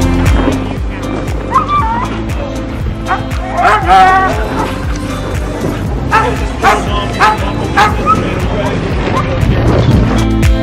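Sled dogs barking and yipping in short, repeated barks over background music.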